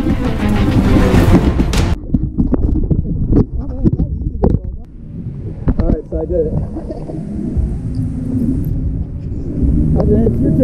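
Background music that cuts off abruptly about two seconds in, then water sloshing and splashing around an action camera held at the water's surface by a swimmer, with a low rumble and a brief indistinct voice.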